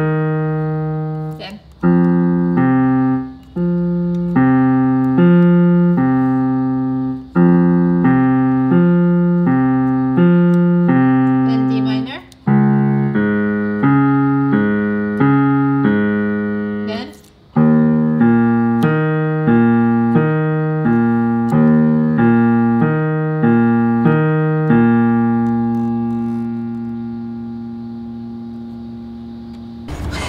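Piano block chords played slowly with the right hand alone, struck in an even pulse with a few brief breaks as the hand moves to a new position. The last chord, struck about five seconds before the end, is held and left to fade.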